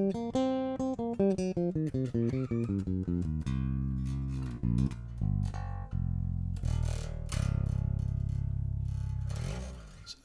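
Fazley Mammoth seven-string bass guitar played direct into an audio interface. A quick run of plucked notes works downward in pitch, then slower low notes follow, ending on one long low note that rings and fades out near the end.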